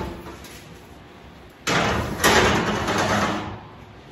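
A wall oven being opened and a foil-lined baking pan pushed onto its metal rack: a scraping, rattling slide of metal in two pushes, starting about one and a half seconds in and lasting under two seconds.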